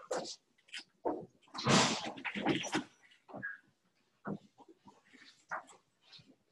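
Marker writing on a whiteboard: a run of short, irregular strokes, the loudest cluster about two seconds in.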